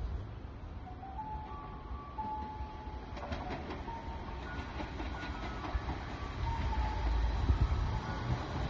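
Low rumble of a KiHa 47 diesel railcar's engine, growing louder near the end, with brief thin squealing tones and a few clicks above it.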